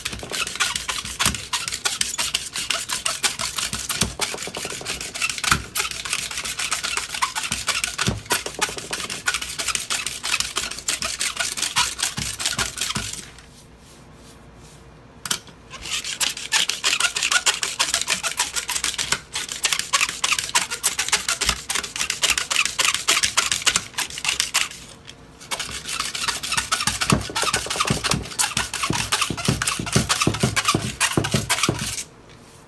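A multi-blade straight-razor scraping tool drawn back and forth across a granite slab, shaving cured UV stone-repair adhesive down level with the stone: a continuous dry scraping. It stops for about two seconds near the middle and for about a second later on.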